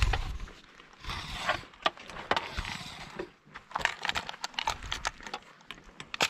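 Irregular crunches, scuffs and clicks of someone moving about on bark and forest litter close to the microphone, with a longer brushing scrape about a second in.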